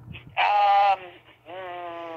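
A person's drawn-out wordless hesitation sounds, a held 'hmm' or 'uhh' while trying to remember: a louder one about half a second in, then a second, quieter one from about a second and a half in.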